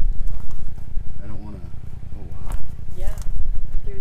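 A few indistinct spoken words over a steady low rumble.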